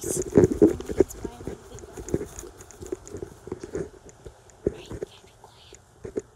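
Indistinct murmured speech close to a phone's microphone for about the first second, then scattered clicks and knocks of the phone being handled.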